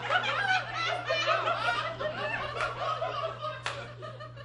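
A theatre audience laughing together, many voices at once, dying away near the end, with one sharp tap just before it fades.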